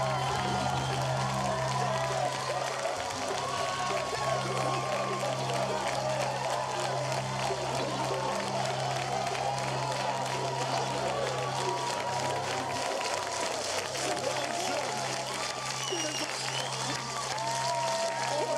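Studio audience clapping and cheering over game-show music with a steady low bass line.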